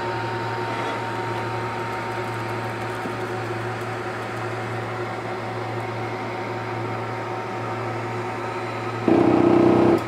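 Diode laser engraver framing, its motors and fans giving a steady hum. About nine seconds in, a loud buzzing rattle cuts in for about a second as the laser head's carriage bangs into the side of the frame, past the machine's true travel limit.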